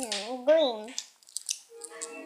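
A girl's voice in a wavering, sing-song hum for about a second, pitch sliding up and down, followed by a few short light clicks.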